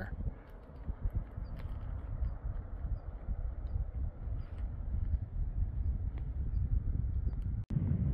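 Wind rumbling on the microphone, with faint scattered clicks. The sound cuts out for a moment near the end.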